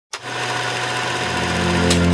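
Intro logo sting: a loud swell of noise starts suddenly and builds into a low sustained synth chord, with a sharp hit just before the end.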